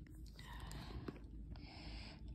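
A person whispering softly, in short breathy stretches without a voiced tone.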